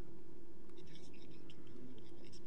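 A lull in the speech: a steady low hum with faint, soft scratching sounds.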